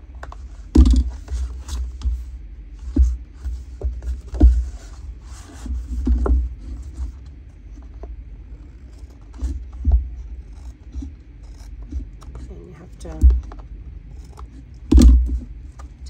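Scissors cutting through thick cardstock in a series of short, uneven snips, trimming a thin strip off the edge, with knocks as the card and scissors are handled on the table. A louder knock comes near the end.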